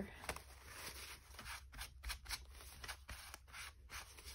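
Faint, irregular rustling and scraping of paper as hands press and smooth glued collage pieces onto a sketchbook page.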